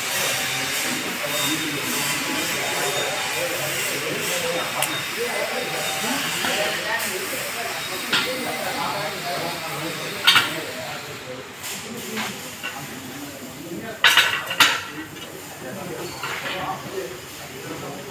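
Sharp metallic taps of a hammer on steel plate: one at about ten seconds in and a quick pair a few seconds later. A steady hiss runs through the first half, with voices murmuring in the background.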